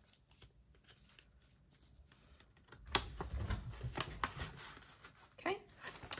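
Paper banknotes being handled and tucked into a binder cash envelope: soft, crisp flicks and rustles of bills, growing into a louder flurry of rustling with low bumps about three seconds in.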